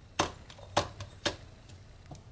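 Three short, sharp taps about half a second apart, over a faint background.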